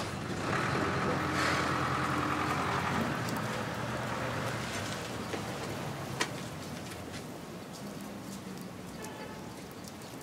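Outdoor street background with a passing road vehicle, its noise swelling in the first seconds and then slowly fading away.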